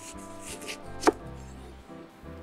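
Kitchen knife slicing through a lemon on a wooden cutting board, with one sharp knock as the blade meets the board about a second in.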